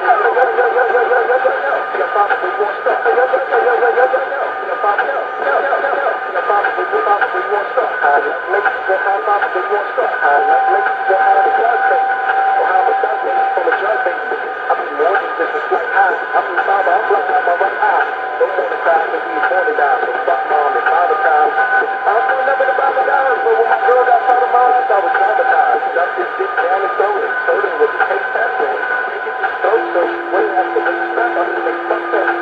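Talking heard through a narrow, tinny channel, like a radio broadcast or a phone line, continuing without a break.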